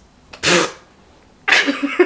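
A woman laughing, stifling it: a sharp burst of breath about half a second in, then a run of short giggles near the end.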